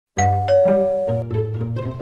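Doorbell chime ringing two falling notes, ding-dong, with music beneath.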